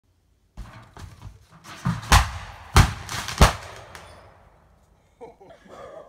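Fireworks going off: about seven sharp bangs in quick succession with crackling between them, the loudest near the middle, then the crackle dies away.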